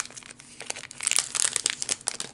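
Blind-box pin packaging being torn open and crinkled by hand, a dense run of crackles that is busiest in the second half.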